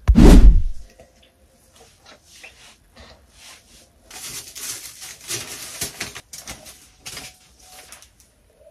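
A loud low thump as the camera is handled, then scattered small clicks and a stretch of rustling handling noise near the end.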